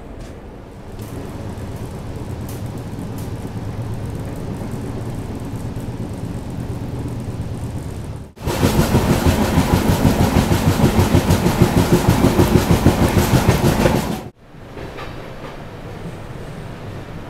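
Moving passenger train: a steady rumble of the coach running on the track, cut about halfway through to a much louder stretch of rushing noise with rapid, regular clatter lasting about six seconds, which cuts off abruptly back to the quieter rumble.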